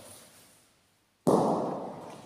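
A single loud knock from a bocce ball striking at the far end of the court, about a second and a quarter in, with a short echo dying away in the hall.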